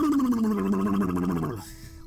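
A man imitating Boss Nass, the Gungan leader from Star Wars: one gargling, fluttering vocal sound of about a second and a half, its pitch sliding down, done softer than he could.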